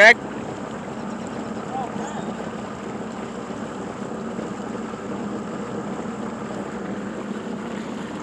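Motorboat engine running steadily while underway, mixed with the rush of water along the hull.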